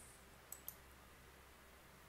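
Two faint computer mouse clicks about a fifth of a second apart, over near silence, as a section of code is set running.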